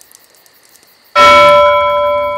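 A bell struck once about a second in, ringing on with several clear steady tones.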